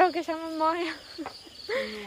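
Crickets chirping in a steady, high, pulsing trill.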